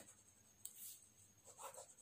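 Faint scratching of a ballpoint pen writing on paper on a clipboard, in a few short strokes.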